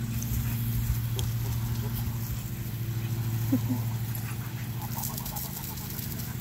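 Dogs snapping and playing at the spray of a garden hose, the water hissing, with one short dog vocalisation about three and a half seconds in. A steady low hum runs underneath.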